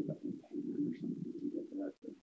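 A muffled, garbled voice over a video-call connection, choppy like speech but with the treble cut away, so that no words come through.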